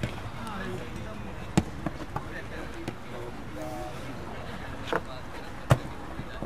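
A football being kicked: a few sharp thuds, the loudest near the end, with faint distant shouts from players.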